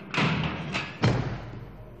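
A heavy metal cell door slamming shut: two sharp hits, then a deep, loudest thud about a second in that reverberates as it dies away.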